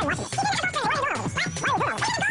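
Sped-up speech of a TV weather presenter, played back in fast motion so the voice becomes a high, rapidly swooping chatter, over a steady music bed.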